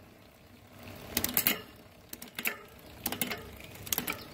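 Bicycle drivetrain on a repair stand: the chain running over the rear cassette as the cranks turn, with the loud rear hub ticking, and a run of sharp clicks from about a second in as the SRAM rear derailleur shifts the chain across the cogs. The shifting now lands cleanly, the cable tension dialed in at the barrel adjuster.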